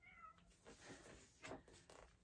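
A faint, short cat meow right at the start, followed by soft rustling of a paper magazine being handled.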